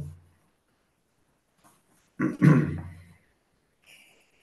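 A person coughing once, about two seconds in: a sharp, loud burst with a rough voiced tail lasting about a second.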